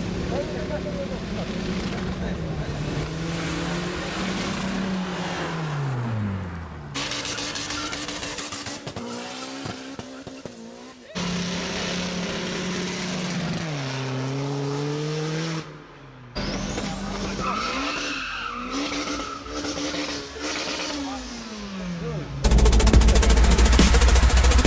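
Car engines revving up and down again and again across several short clips, with tyres squealing. Louder music comes back in near the end.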